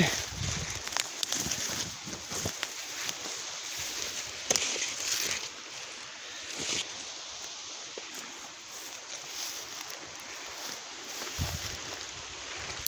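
Footsteps and rustling through dry grass and forest undergrowth, with scattered light crackles and a few louder swishes along the way.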